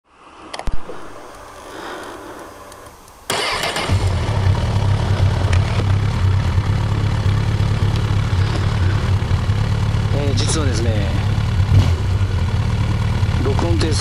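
Honda CB1000R's inline-four engine starting: it catches suddenly about three seconds in and then idles steadily. A sharp click comes in the first second.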